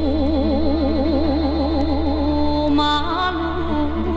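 A woman singing a Romanian folk song, played from a vinyl record. She holds one long note with a wide, even vibrato, then moves to a shorter note about three seconds in.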